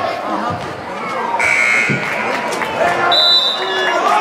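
A gym scoreboard horn sounds once, briefly, about a second and a half in, then a referee's whistle gives a short blast near the end, over gym crowd chatter.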